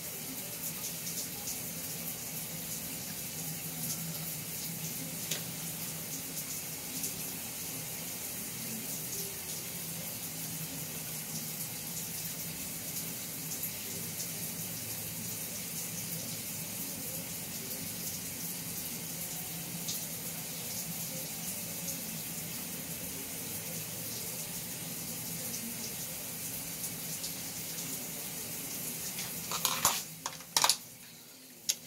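A steady rushing hiss with a low hum beneath it, unchanging throughout, with a few faint light ticks.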